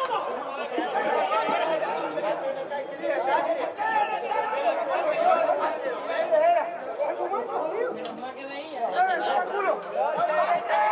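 Several voices talking over one another close by: spectators' chatter at the match.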